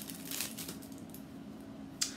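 Faint rustling of packaging and fabric being handled as a small package is opened, with a few soft crinkles in the first half second. After that only a low steady hum remains.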